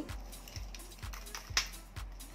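Crunchy toasted oat granola being scooped by hand into a glass jar, giving light scattered clicks and rattles of clusters against glass, the loudest about a second and a half in. Background music with a steady low beat runs underneath.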